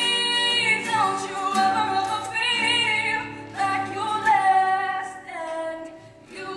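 A young woman singing live into a microphone, wordless to the recogniser, holding long notes that slide between pitches, over a quieter, steady accompaniment.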